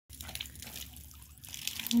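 Garden hose with a clear spray nozzle dribbling and spattering water onto wet concrete: a faint hiss with small drips, growing a little louder near the end as the flow picks up.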